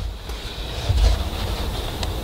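Low rumble of wind buffeting the microphone, swelling about a second in.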